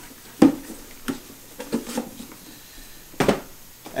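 Cardboard boxes being handled and set down on a countertop: a handful of knocks and taps, one about half a second in and the loudest a little after three seconds.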